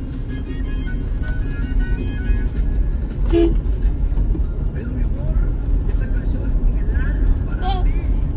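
Music playing over the steady low road rumble inside a moving car. A young child's voice breaks in briefly twice, about halfway through and near the end.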